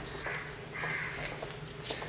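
A few short bird calls over a steady low hum.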